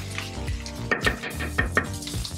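Background music over a wooden spoon stirring chili con carne in a sizzling frying pan, with a few sharp clicks of the spoon in the pan from about a second in.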